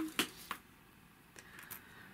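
Small sharp clicks of jewellery being handled and set down on a table: two clear clicks in the first half second, the first the loudest, then a couple of faint clicks and a light rustle.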